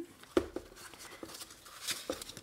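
Faint handling sounds of a shoe being opened: small clicks from the metal zipper at the back of the heel being worked, and soft rustling of tissue paper, with a sharper click a little way in and a brief sharp rasp near the end.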